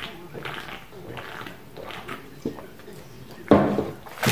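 A person gulping a drink from a can, swallowing repeatedly about twice a second, with a louder sound near the end as the drinking stops.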